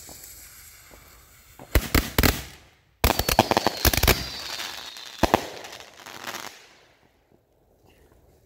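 Ground firework going off: a low fuse hiss, then a quick string of sharp cracks about two seconds in, followed by a few seconds of dense crackling and bangs with a faint whistle, dying away about a second before the end.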